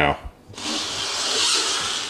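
Power wheelchair's electric drive motors whining as the chair pulls away and speeds up, starting about half a second in and growing a little louder. This is a test drive of a newly raised forward-acceleration setting on the controller, which comes out as good.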